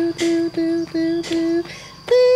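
Rubber squeeze-toy elephants squeaking: five short squeaks at one pitch, about three a second, stopping shortly before the end.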